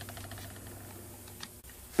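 Quiet room tone: a low steady hum with one faint click about one and a half seconds in.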